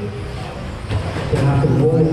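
Electric 1/10-scale RC stadium trucks running on an indoor track, with an indistinct announcer's voice on the PA coming in about a second and a half in and louder than the cars.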